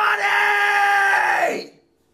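A man's long, strained scream, held at a steady pitch and fading out shortly before the end.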